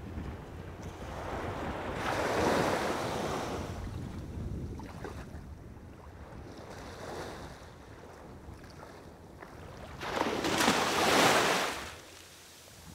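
Small waves washing on a shore, with wind rumbling on the microphone; the wash swells about two seconds in and again, loudest, near the end.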